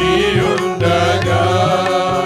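A group of men singing a Telugu Christian hymn together to electronic keyboard accompaniment, with light drum strokes underneath.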